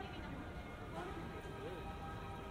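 Street ambience of indistinct voices of passersby talking, over a steady background hum of the city.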